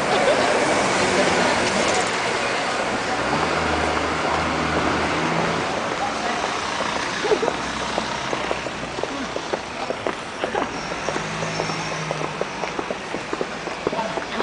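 Town-street noise: a car running by the kerb and indistinct voices, with footsteps ticking on the pavement in the second half.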